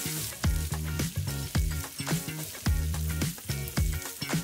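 Strips of ham sizzling in vegetable oil in a frying pan, with background music with a steady beat over it.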